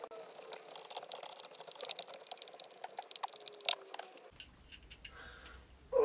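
A screw being driven into wood by hand with a screwdriver: a dense run of small, irregular clicks and creaks for about four seconds, then quieter.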